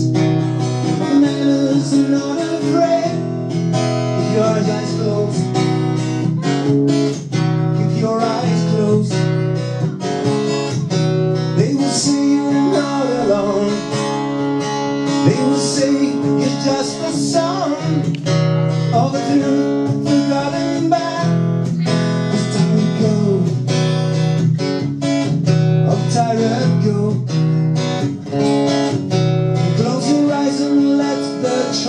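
Live song on guitar, strummed in a steady rhythm, with a man singing over it.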